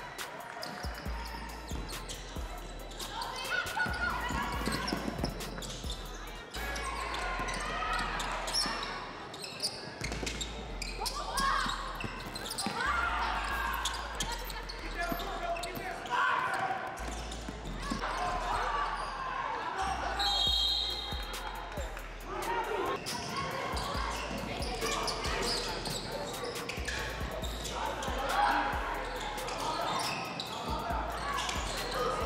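Basketball being dribbled on a hardwood gym floor during play, with a run of short knocks, under players' and spectators' voices echoing around the hall.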